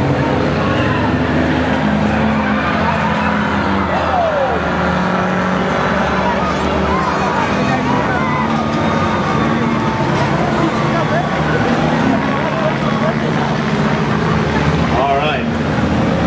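A pack of small front-wheel-drive skid plate race cars running laps together, several engines holding steady revs at once.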